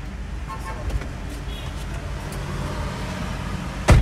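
Car cabin noise while driving in traffic: a steady low rumble of engine and tyres on the road. A sudden loud knock comes just before the end.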